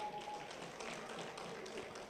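A pause in a man's amplified speech: only faint, even background noise of the venue, picked up by his microphone.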